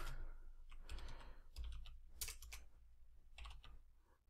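Computer keyboard typing: a handful of faint, irregularly spaced keystrokes.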